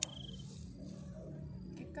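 A single sharp snip of scissors cutting through water spinach stems right at the start, followed by a brief high tone, over a steady low hum.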